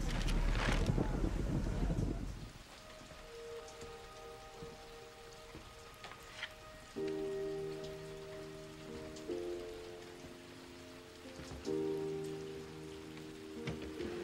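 Steady rain under a soft, slow film score of held chords, with a new chord about every two to three seconds. The first two seconds are louder and noisier, before the music comes in.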